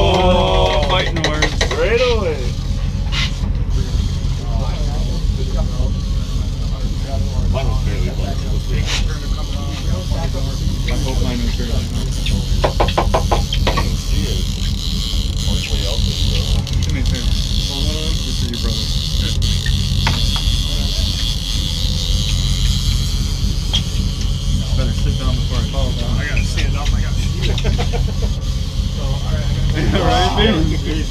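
A fishing boat's engine runs steadily at trolling speed, making a constant low drone that does not change.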